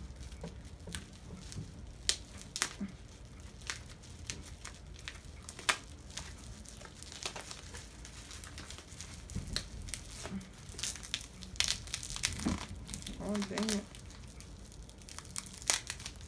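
Packaging crinkling and rustling in irregular short crackles as a makeup item is handled and unwrapped, with some tearing.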